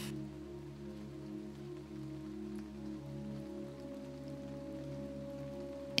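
Soft ambient sleep music: sustained, gently pulsing low synth tones, with a higher held tone joining about halfway through.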